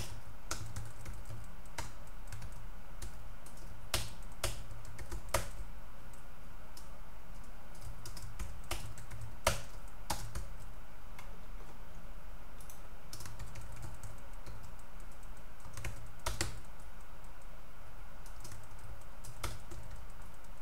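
Typing on a computer keyboard: irregular runs of keystrokes with pauses, and a few louder key strikes, over a low steady hum.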